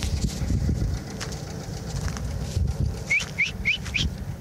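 Wind rumbling on the phone's microphone, with footsteps on dry dirt and brush. Near the end, a bird gives four short, quick rising chirps.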